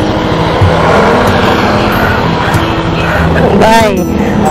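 Motorcycle engine idling steadily close to the microphone. Near the end, a short voice call rises and falls in pitch over it.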